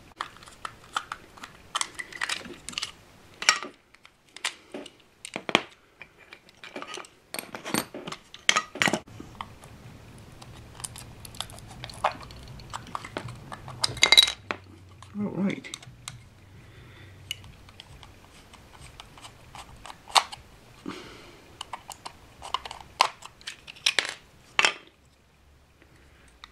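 Irregular sharp clicks and taps of small plastic parts and a hand tool as an OO gauge model tender is taken apart, its body worked off the chassis.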